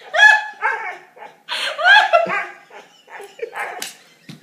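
A dog barking: a few short, high-pitched barks with a rise and fall in pitch, fainter toward the end.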